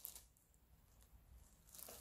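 Near silence, with only faint rustles of the clear plastic bag hood worn over the head and shoulders, near the start and again just before the end.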